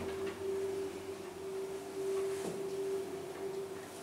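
Schindler elevator car travelling upward, heard from inside the car as a steady hum at one pitch.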